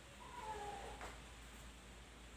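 A cat meowing once: a call of under a second that dips slightly in pitch, followed by a short click.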